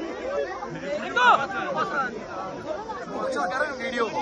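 A crowd of people talking at once, many voices overlapping.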